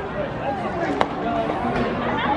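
A single sharp pop about a second in: a pitched baseball smacking into the catcher's leather mitt, over steady crowd chatter.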